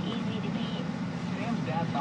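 Steady drone of a Jeep Liberty's engine and tyres heard inside the cabin while driving on a snow-covered road. Faint radio talk runs over it, mostly in the first half second and near the end.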